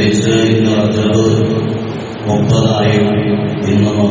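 A man's voice chanting in long held notes, in two phrases with a short break about two seconds in.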